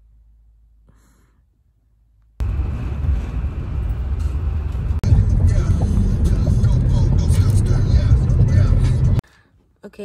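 Loud low rumbling and rustling inside a car as the phone is handled close to a cellophane-wrapped bouquet. It starts abruptly a couple of seconds in, after a faint stretch, and cuts off suddenly near the end.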